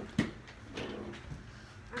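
A single sharp knock shortly after the start, then low room sound with faint voices.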